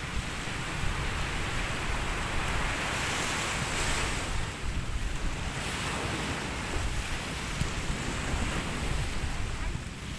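Small waves breaking and washing up a sandy shore, the wash swelling to its loudest about three to four seconds in, with wind rumbling on the microphone.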